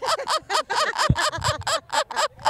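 Women laughing: a fast run of short, high laugh pulses, about five or six a second, continuing through the pause in the talk.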